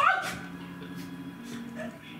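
A sudden high yelping cry that sweeps up in pitch and dies away within about half a second, over steady background music.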